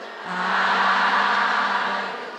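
Buddhist chanting by many voices in unison: one long held note that comes in about a quarter second in and fades away near the end.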